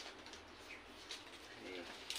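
Faint rustling and crinkling of fresh coconut palm leaflets being folded and pulled through the weave by hand, with a brief soft low call near the end.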